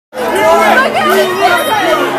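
Several people talking loudly over one another, a babble of chatter that cuts in suddenly.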